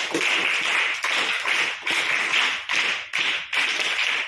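A group clapping in unison, about two beats a second, each beat a short burst of many hands.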